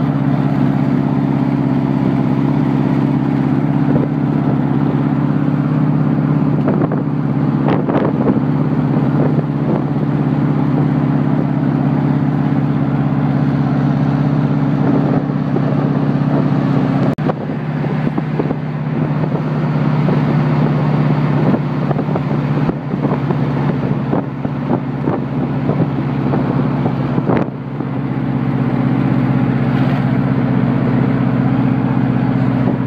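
Open-top buggy's engine running steadily while driving, with road and wind noise; the engine note drops briefly about seventeen seconds in, then settles again.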